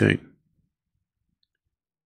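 A man's voice trails off at the end of a word, then near silence follows for about a second and a half.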